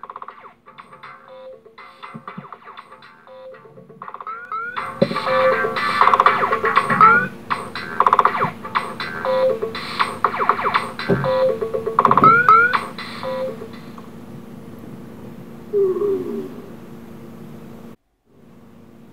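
Layered electronic music loops played by an RFID-triggered LEGO band, with short rising glides. The music thins out near the end and then stops, as the minifigure musicians are lifted off the sensors beneath the stage.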